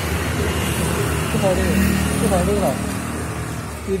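Steady motor-vehicle noise from passing road traffic, easing off slightly over the few seconds, with faint distant voices around the middle.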